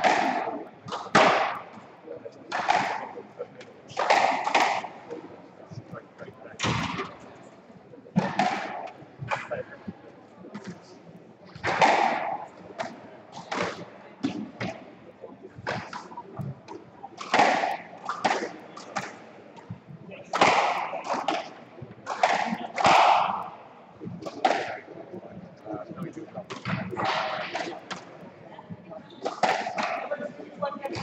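Squash rally: the ball cracking off the rackets and the walls of a glass-backed court, a sharp hit every second or two, each ringing briefly in the court.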